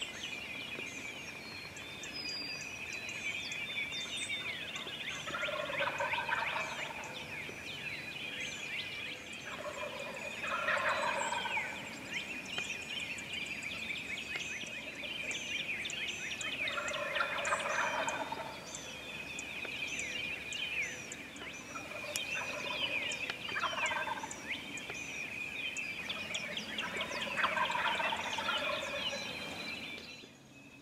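Wild turkey gobbler gobbling five times, roughly every five to six seconds. Songbirds chirp steadily in the background.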